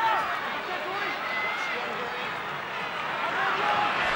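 Stadium crowd noise: a steady din of many voices with a few scattered shouts.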